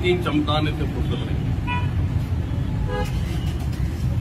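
Steady low rumble of street traffic, with a short car-horn toot about a second and a half in.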